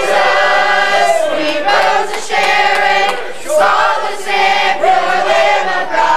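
Youth choir of mixed young voices singing a gospel song, holding long notes in phrases with short breaks between them.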